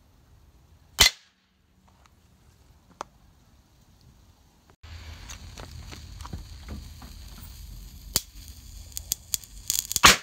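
A hammer blow sets off a tiny crystal of dry silver nitrotetrazolate on a steel anvil with one sharp crack about a second in. Later come outdoor background noise and scattered sharp clicks, and a louder bang begins right at the end as a 50 mg charge detonates inside a drink can.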